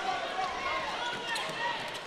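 Basketball game sound in a gym: a steady hum of crowd voices, with faint calls and the ball dribbling on the hardwood court.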